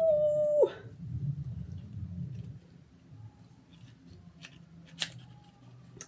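A woman's drawn-out "ooh", rising and then held on one note for under a second. Faint handling of a small lipstick box follows, with one sharp click about five seconds in.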